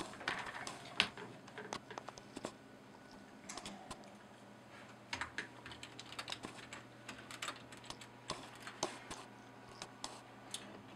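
Computer keyboard being typed on in irregular bursts of clicks, over a low steady hum.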